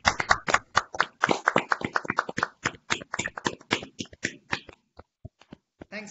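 Applause from several video-call participants clapping into their own unmuted microphones. It is dense at first and thins to a few scattered last claps about five seconds in.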